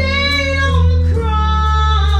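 A woman singing solo with electric keyboard accompaniment, holding long sung notes over sustained low keyboard chords.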